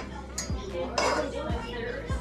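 Spoon knocking and scraping against a metal stockpot as a lump of cream cheese is worked off it into the stock: a few knocks about half a second apart.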